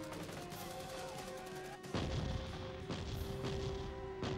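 Battle sound effects over a dramatic music score with long held tones: dense rapid gunfire in the first two seconds, then two heavy booms, about two and three seconds in.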